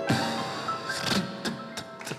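Grand piano playing held chords, accompanied by beatbox percussion: sharp mouth-made clicks and hits keeping the beat, in a short gap between sung lines.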